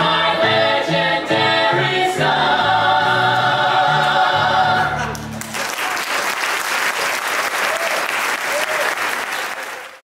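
Small cast singing the closing bars of a stage musical number with keyboard accompaniment, ending on a long held chord that stops about five seconds in. An audience then applauds until the sound cuts off.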